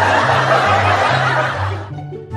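Canned laughter sound effect laid over background music with a stepping bass line. The laughter cuts off abruptly near the end, leaving the lighter music.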